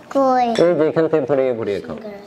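A person's voice, drawn out and sing-song, with a few light clinks of dishes at the table.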